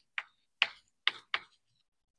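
Chalk tapping and scratching on a blackboard as an equation is written: four short, sharp strokes a fraction of a second apart.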